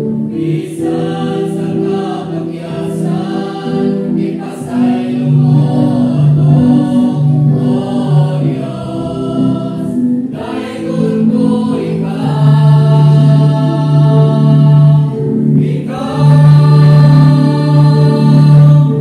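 Mixed church choir of women's and men's voices singing a hymn in harmony, holding long notes in phrases, with a short break about ten seconds in.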